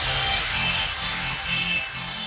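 Background electronic workout music with a steady, repeating beat.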